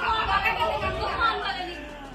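Indistinct chatter of people talking over one another, trailing off near the end.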